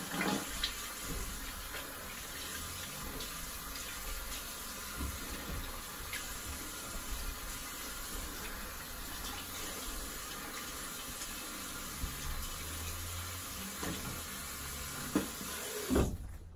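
Bathroom tap running steadily into a sink as shaving lather is rinsed off a face.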